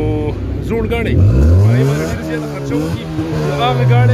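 A car engine revved hard: its pitch climbs steeply about a second in, holds high, and begins to fall near the end, with crowd voices alongside.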